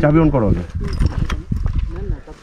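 Honda Livo's small single-cylinder engine labouring up a rough rocky track, its note swinging up and down, with a run of knocks from the wheels and suspension hitting stones after about half a second.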